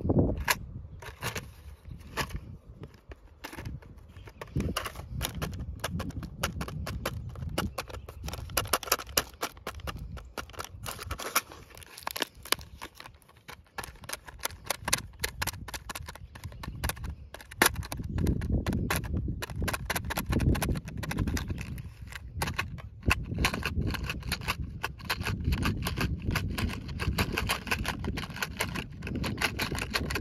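A clear plastic hook box handled and tilted in the fingers, loose metal fishing hooks rattling and clicking against the plastic in quick, dense clicks. A low rumble joins in about halfway through.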